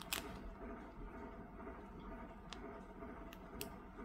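Quiet room tone with a low steady hum and a few faint, light clicks, four in all, from hands handling the diamond painting canvas and the sheets lying on it.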